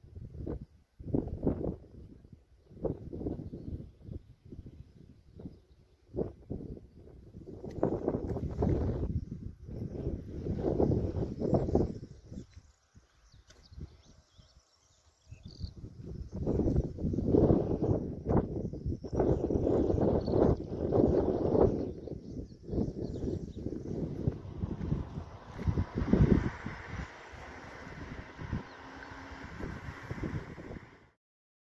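Wind buffeting the microphone in irregular gusts, loudest in the low end, with short lulls between gusts.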